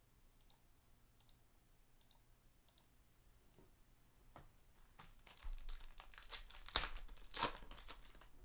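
A foil trading-card pack being torn open and its wrapper crinkled, starting about halfway through with a run of irregular rips and crackles. The loudest rips come near the end. Before that there are only a few faint clicks.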